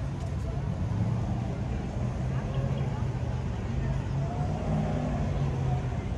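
Steady rumble of traffic on a multi-lane city street, with people's voices talking in the background.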